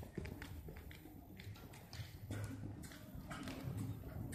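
Hoofbeats of a horse cantering on the soft dirt footing of an indoor riding arena: a fairly faint, irregular run of dull thuds.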